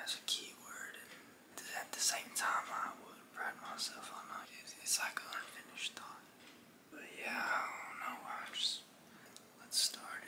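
A man whispering close to the microphone, in phrases with short pauses between them.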